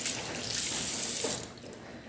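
Water running from a tap into a sink, cut off about one and a half seconds in.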